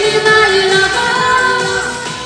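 A woman singing a Russian pop (estrada) song live into a microphone over backing music with a beat. She holds a long note in the second half while the music begins to fade near the end.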